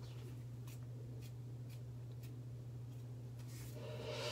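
Faint soft clicks and rubbing, about one every half second, as fingers press a clear plastic aligner onto the teeth, over a steady low hum.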